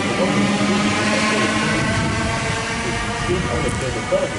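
Sydney Trains Waratah double-deck electric train pulling out of the platform: steady humming tones from its traction equipment over wheel and rail noise, the hum dying away about halfway through as the last cars clear.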